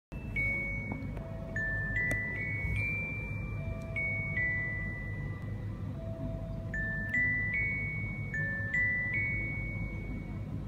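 A recorded lullaby playing: a slow, gentle melody of clear, bell-like chiming notes, each held about half a second.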